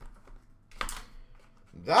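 Small clicks and taps of hands handling trading-card boxes and cards in plastic packaging, with one sharper click a little under a second in.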